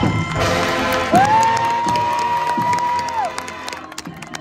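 High school marching band playing, with the crowd cheering. About a second in, one long high whoop rises in, holds and drops away.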